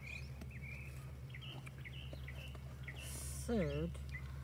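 Small birds chirping in short, repeated calls over a steady low hum, with a brief hiss or rustle about three seconds in.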